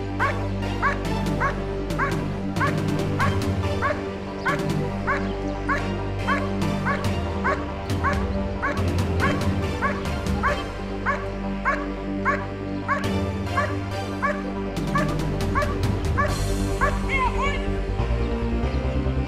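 German Shepherd barking repeatedly at the blind, about two to three barks a second, in the bark-and-hold exercise: the barking signals that the dog has found the hidden helper and is guarding him. The barking stops near the end, with background music running throughout.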